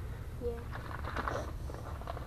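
A soft "yeah", then faint rustling and handling noises as bait packages are handled.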